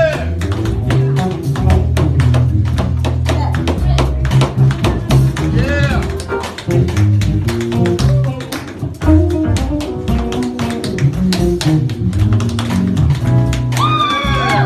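Tap shoes beating out fast, dense rhythms of sharp clicks on a stage floor, over a live band with drums, bass notes and electric guitar.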